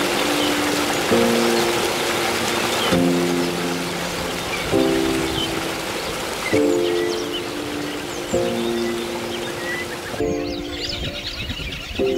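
Background music of held chords changing about every two seconds, over the steady rush of a stream flowing over rocks. About ten seconds in, the water noise drops away and birds chirp over the music.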